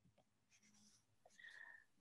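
Near silence: room tone in a pause between spoken sentences, with a faint brief sound shortly before the end.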